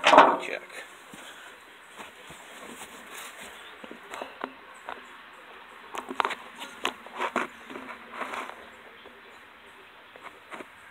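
Handling noise from the phone as it is moved with a finger against it: a brief loud rustle right at the start, then scattered short clicks and rubs, busiest in the second half.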